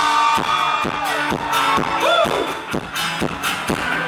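Live pop band music with a steady drum beat and keyboards, heavy in the bass.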